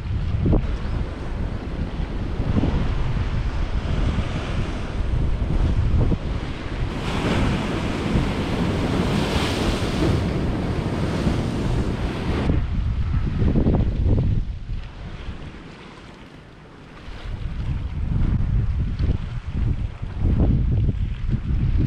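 Ocean waves breaking and washing over coastal rocks, with wind buffeting the microphone. A large wave crashes in a long hissing wash from about seven to twelve seconds in, and the surf eases for a moment a few seconds later.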